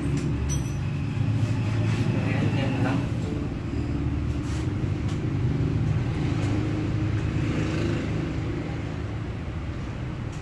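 Motorcycle engine idling steadily.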